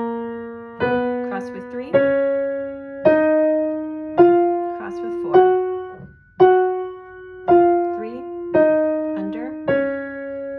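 Piano playing the F-sharp major scale hands together, both hands an octave apart, one note about every second. The scale steps up to the top F-sharp around the middle and then comes back down.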